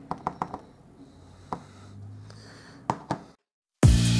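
Light, irregular taps of a Stampin' Up! ink pad dabbed onto a clear stamp on an acrylic stamping plate, about six taps. After a brief dead silence, upbeat background music with drums starts near the end.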